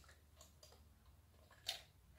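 Near silence with a few faint light ticks and one sharper short click near the end, from a child's plastic toy fishing rod touching the plastic fishing-game board and fish.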